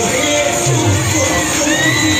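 Children shouting and cheering in a crowd over loud dance music with a steady beat.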